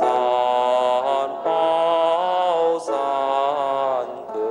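Melodic Buddhist chanting of lamp-offering verses, sung in long held phrases that glide between notes, with brief breaks about a second and a half and just under three seconds in.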